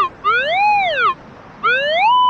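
Metal detector's audio response as the search coil passes over a buried metal target: a tone that rises in pitch and falls back, repeated sweep after sweep, each lasting under a second.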